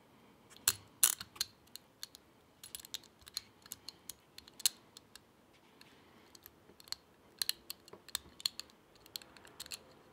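Irregular small metallic clicks and scrapes of a bobby pin worked inside a steel handcuff's lock, lifting the pawl so the ratchet arm can swing open.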